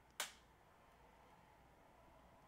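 Near silence with a single short, sharp click about a fifth of a second in.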